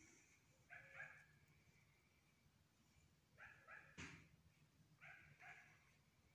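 Faint dog barking: three short runs of barks, mostly in pairs, with a single click about four seconds in.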